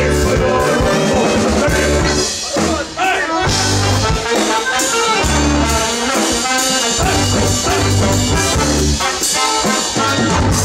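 Live band playing a brass-led tune, with trombone and saxophone over bass and drums. The band drops out briefly about two and a half seconds in, then comes back in.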